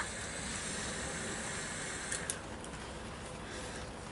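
A draw on an e-cigarette: a short click, then a steady hiss of air and vapour through the device for about two seconds, fading to a softer hiss.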